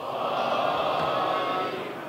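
A congregation reciting the salawat (blessings on the Prophet Muhammad and his family) together in answer to the preacher's call, many voices at once in a steady mass.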